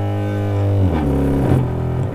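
A loudspeaker driven by a TDA2030 amplifier in bridge mode plays a low, steady sine test tone from a function generator, with audible overtones. The tone shifts lower in pitch about a second in.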